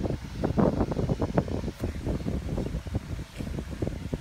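Rustling and low, irregular bumps of handling noise on the phone's microphone as plush toys are shuffled and pressed across a bedspread.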